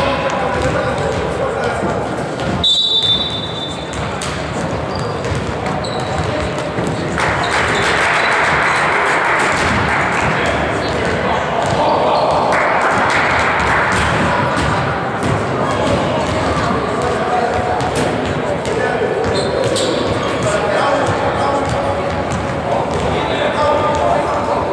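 Echoing sports-hall ambience of indistinct overlapping voices and chatter. A brief high whistle sounds about three seconds in, and a louder stretch of noisy voices follows from about a quarter to halfway through.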